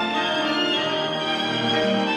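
Chamber string ensemble of violins and cello playing classical music, bowing held, overlapping notes at an even volume.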